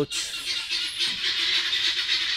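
A flock of helmeted guinea fowl calling together in a steady, high-pitched chatter.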